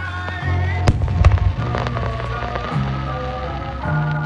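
Aerial firework shells bursting with several sharp cracks, the loudest about a second in, over music with sustained notes and a stepping bass line.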